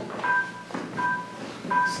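Keyboard playing a short two-note figure, one high note and one lower, repeated about three times.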